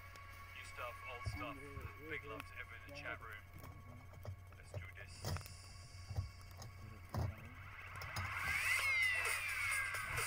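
Voices talking with music playing faintly behind them, a few sharp knocks in the second half, and a louder stretch of sliding, criss-crossing tones near the end.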